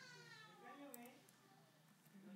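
A faint, drawn-out voice-like call that falls in pitch over about a second, with a single sharp click near the middle.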